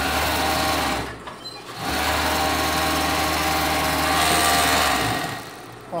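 Industrial overlock (serger) machine stitching plush fur fabric. It runs in two bursts: a short run of about a second, a brief stop, then a longer steady run that stops about five seconds in.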